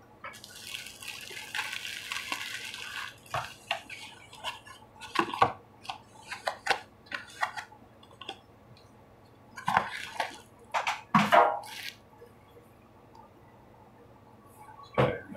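Loose plastic wrapping crinkling for about three seconds, then a run of light taps, clicks and scrapes as a cardboard tea box and its sleeve are handled on a wooden table. A few louder knocks come about two-thirds of the way through.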